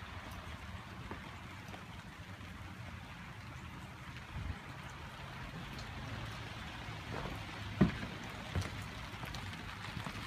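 Steady hiss of rain falling, with wind rumbling on the microphone, and a couple of short knocks near the end.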